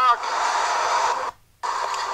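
Steady hiss of outdoor background noise on a low-fidelity recording, cutting out abruptly for a moment just past the middle and then coming back.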